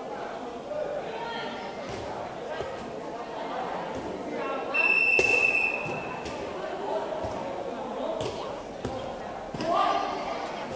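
A referee's whistle blows one steady blast of about a second, roughly five seconds in, loud over the hall's voices and chatter.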